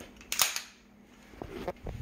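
Sharp metallic clack of a stainless Beretta 9 mm pistol's slide being pulled back and locked open to show it is unloaded, followed by a few lighter handling clicks and knocks.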